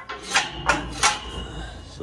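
Three sharp knocks about a third of a second apart, typical of a steel gate and its latch being handled and knocked against the frame.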